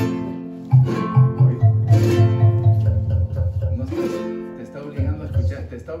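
A small acoustic folk ensemble playing a tune in three-four time. Strummed chords on guitar-type string instruments come about every two seconds, over a steady run of low plucked bass notes from a marímbula, a box bass with metal tines.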